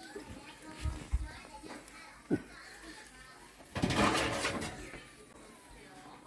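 Faint children's voices in the background, loudest around the middle. A few soft knocks and a sharp click come from handling at the open oven.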